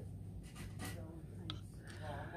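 Quiet store background: a steady low hum with faint scratchy rustling and faint voices.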